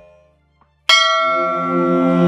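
Devotional music dies away into a brief silence, then a bell is struck once just under a second in and rings on, with a steady low tone sounding beneath it as the next piece begins.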